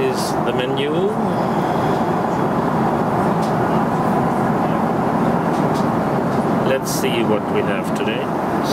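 Steady cabin noise of a Boeing 777-300ER airliner in flight: an even rush of airflow and engine noise with no change in level.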